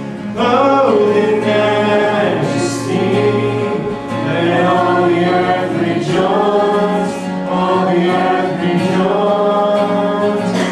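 Church worship band playing a slow praise song: several voices singing long held lines together over electric guitars, bass, keyboard and drums, with cymbal washes here and there.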